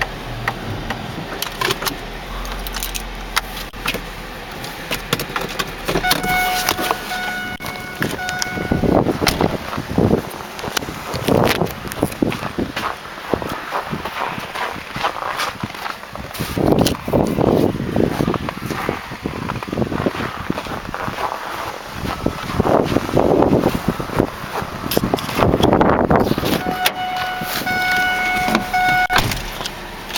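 A Ford car's steady electronic warning chime sounds for about two seconds around six seconds in and again near the end, with the key in the ignition. Between the chimes come irregular handling knocks and rustling bursts.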